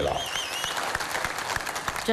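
A large crowd applauding steadily after a speech ends.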